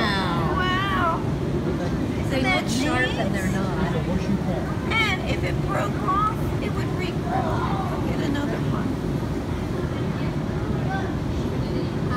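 Indistinct voices of people talking in a busy room, some of them high-pitched, over a steady low background rumble.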